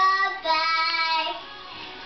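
A young girl singing two held notes, the second longer, then going quiet.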